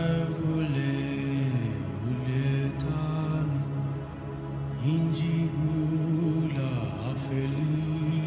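A man singing slow, chant-like worship phrases with long held notes over a steady drone. One phrase starts right at the beginning and falls away about four seconds in; a second begins about five seconds in.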